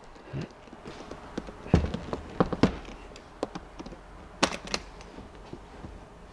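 Hardshell guitar case being handled on a desk: a thud as it is put down about two seconds in, then a string of sharp clicks and knocks, the sharpest pair near the end, as its metal latches are worked.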